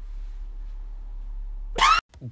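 A steady low hum with faint background noise, then near the end a short, loud cry that rises in pitch.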